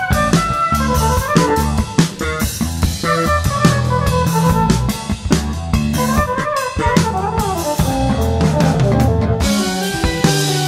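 Jazz-fusion band playing an instrumental passage: an electric guitar lead line that winds and slides up and down in pitch over a drum kit and electric bass.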